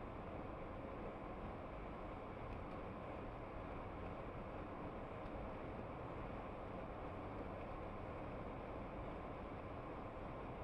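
Steady road and engine noise inside a moving car's cabin, an even low rumble and hiss with no distinct events.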